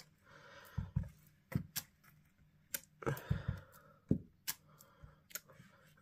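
Clear acrylic stamp block handled and pressed down onto cardstock on a craft mat: a scatter of light clicks and knocks at uneven intervals, with a little soft rubbing.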